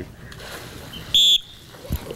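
A short, shrill whistle blast about a second in, the trainer's whistle signalling the dolphin that its leap is done right, followed near the end by a brief low thud as the dolphin splashes back into the water.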